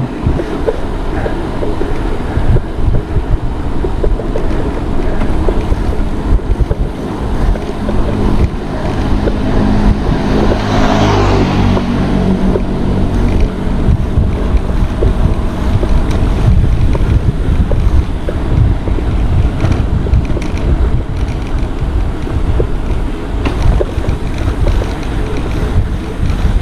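Wind buffeting an action camera's microphone on a moving bicycle: a loud, steady, rumbling rush of air. About ten seconds in, a brighter hiss swells for a few seconds and fades.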